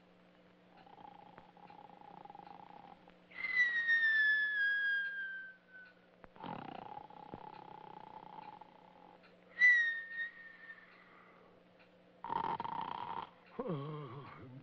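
Comic snoring: a rasping snore on each breath in followed by a loud whistle that slides down in pitch on the breath out, twice over, with a third snore near the end.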